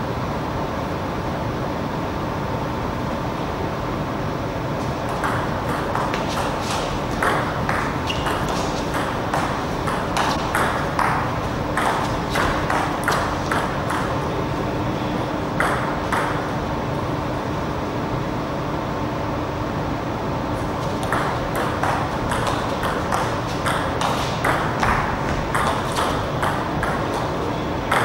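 Table tennis rallies: the ball clicking off rackets and the table in quick alternation, in two runs, one of about ten seconds and a shorter one near the end, over a steady background hum.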